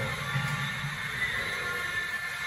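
A steady low mechanical hum with faint, steady high-pitched tones over it, from the machinery working the transformer's wheeled carriers in the vault.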